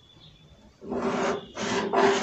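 Pen and plastic ruler scratching across pattern paper in two strokes, the first starting about a second in, as a line is drawn on the pattern.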